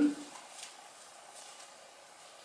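Faint, soft rustling of a folded paper tissue pressed and dabbed against the face with the fingers, over quiet room noise.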